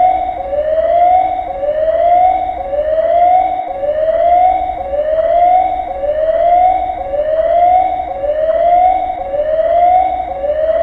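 Emergency alarm siren whooping: a loud rising tone that repeats about once a second, each rise breaking off sharply before the next begins. It is the warning for a radiation accident at a nuclear plant.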